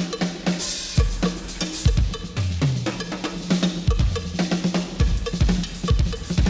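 Drum kit and hand percussion playing a dense, steady groove in a live jazz-funk performance, with quick snare and bass-drum hits and a few low held notes underneath.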